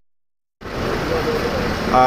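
About half a second of dead silence at an edit, then the steady rumble of traffic and engine noise from inside a bus creeping through the toll plaza, with faint voices.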